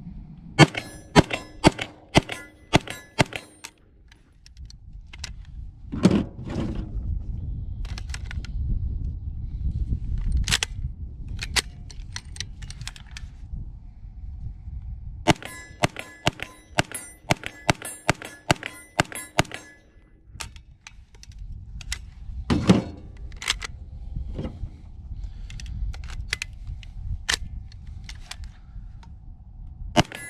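Heckler & Koch SP5 9 mm roller-delayed carbine fired semi-automatically. A quick string of about ten shots comes first, then scattered single shots, then a longer string of about fifteen.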